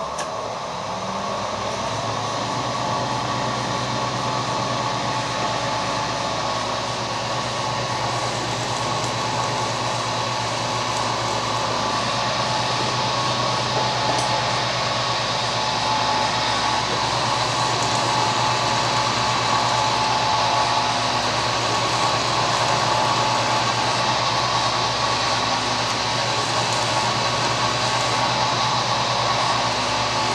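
Milling machine spindle running at high speed, a steady mechanical whine, as a small 3.2 mm drill bores the tapping hole for an M4 thread through a metal block. The sound builds slightly over the first couple of seconds as the speed comes up.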